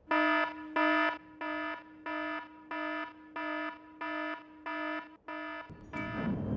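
iPhone alarm ringing: a pitched beep with bright overtones, repeated about three times every two seconds, the first two beeps louder than the rest. Near the end a broader, noisier sound comes in over it.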